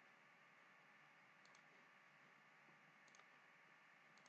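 Near silence: faint room hiss with a few very faint computer mouse clicks, a pair about a second and a half in and another pair near three seconds.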